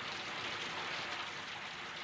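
Steady, even hiss of rain falling, with no other events.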